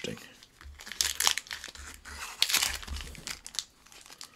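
Trading-card pack wrapper being torn open and crinkled by hand, in irregular crackling bursts with a few sharper rips.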